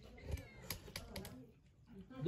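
A domestic cat meowing faintly, with a few sharp clicks and knocks from a small cup and an aluminium jug being handled.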